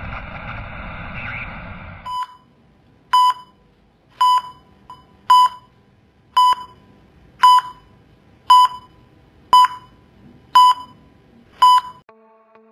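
TV-static hiss that cuts off about two seconds in. It is followed by the single-tone beeps of a hospital heart monitor sound effect, ten short beeps at about one a second.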